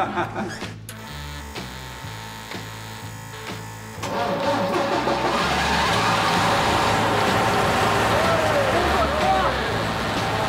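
Bus engine running after it has just been started, under background music. About four seconds in it gets much louder and stays loud, with a man shouting over it.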